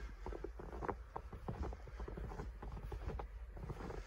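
Footsteps crunching in snow: a quick, irregular series of short crunches and clicks.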